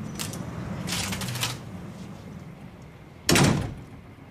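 Kitchenware handled at a counter: a few light clicks and a short rattle about a second in, then a louder clatter near the end.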